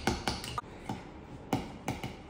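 A metal spoon muddling mint leaves in honey in a ceramic mug, knocking against the inside of the mug in about seven irregular clicks.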